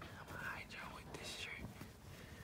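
A man whispering a few quick words, low and breathy.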